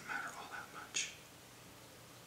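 Soft, half-whispered words from a man trailing off mid-sentence, with a short hiss about a second in, then quiet room tone.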